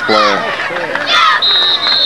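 A referee's whistle blows the football play dead: one long, steady, high blast starting about one and a half seconds in, over a man's commentary and crowd noise.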